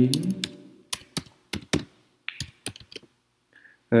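Typing on a computer keyboard: about a dozen separate keystrokes at an uneven pace, stopping about three seconds in.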